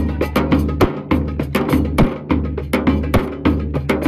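Large double-headed bass drum (tabl) and a frame drum beaten in a fast, steady rhythm of about four strikes a second, with a low steady tone underneath.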